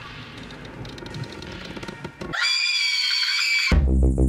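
A high-pitched cry with several steady overtones, held for about a second and a half, cut off as electronic dance music with a heavy bass beat starts suddenly near the end.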